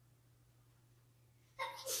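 Near silence with a faint steady low electrical hum; near the end a man draws a quick, audible breath and starts to speak.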